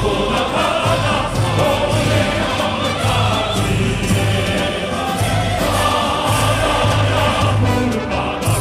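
Music with many voices singing together, over a low, regular beat.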